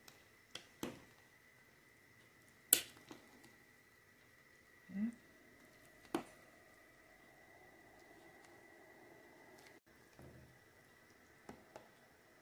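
A ladle stirring soup in an enamel pot, giving a few sharp knocks against the pot, the loudest about three seconds in, over a faint steady high hum. A short low rising sound comes about five seconds in.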